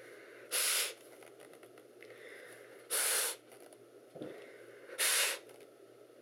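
Three short, even bursts of blown air, about two seconds apart, aimed at a notebook computer's cooling fan to see whether it spins. The fan turns only sluggishly, which may mean a problem. A faint low knock comes between the second and third bursts.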